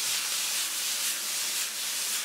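Cubes of chuck-roast stew beef sizzling steadily in hot olive oil in a sauté pan, searing and browning.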